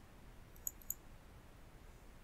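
Two quick, sharp clicks of a computer mouse button, about a quarter second apart, a little over half a second in, over a faint steady low hum.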